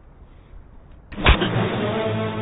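Low room tone, then just past a second in a single sharp, loud impact hit, typical of a fight-scene punch effect, after which dramatic music enters with loud sustained chords.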